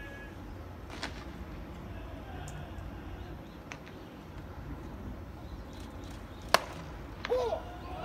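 A single sharp pop of a pitched baseball hitting the catcher's mitt, the loudest sound, followed a moment later by a brief shout, over steady ballpark background with a couple of faint clicks earlier.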